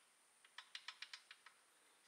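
Faint, quick metallic clicking, about ten small clicks in a second, from the intake and exhaust rocker arms of a Honda EU2200i's overhead-cam engine being rocked by hand. The clicks are the valve lash: there is play on both rockers, which means both valves are closed and the piston is at top dead center.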